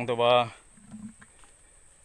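A person's voice calling out loudly, ending about half a second in, followed by quiet outdoor ambience with a brief faint low sound about a second in.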